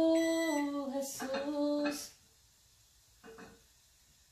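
A woman singing unaccompanied, holding long notes that step down in pitch, then stopping about halfway through.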